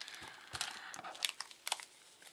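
Paper tea-bag sachet crinkling as it is handled: a run of small, irregular crackles and clicks.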